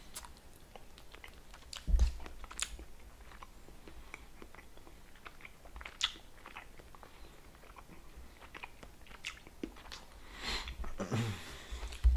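A person chewing a small gummy candy close to the microphone: scattered wet mouth clicks and smacks, with a dull thump about two seconds in.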